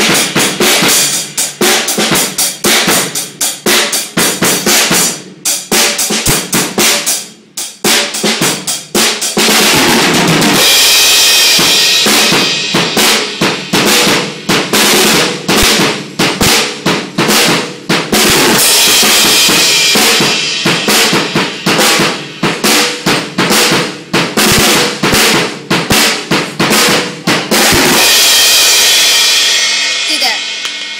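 Drum kit played live: rapid strokes on the drums and bass drum, with a short break about seven seconds in and several spells of ringing cymbals that wash over the hits.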